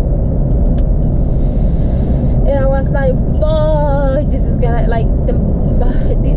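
Steady low rumble of a car's engine and tyres heard from inside the cabin while driving, with a voice coming through in short stretches around the middle.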